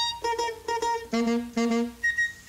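Orchestra backing on a 1953 Italian-American novelty pop record, playing a short instrumental phrase of about five separate notes between sung verses.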